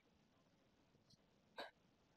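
Near silence: room tone, with one faint, brief sound about a second and a half in.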